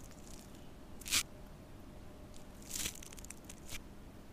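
Short scraping and rustling sounds with a few light clicks as painting tools are handled and a brush is brought to the paper. There is one scrape about a second in and another near the three-second mark, followed by small clicks.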